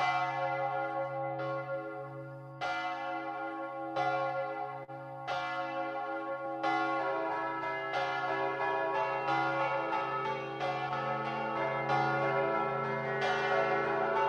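Church bells ringing, with overlapping strikes and a hum that hangs under them. The strikes come about every second or so and grow busier about halfway through.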